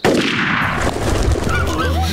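A flock of birds squawking in a cartoon sound effect. It starts suddenly and loud, fades over about a second, and has a low rumble underneath.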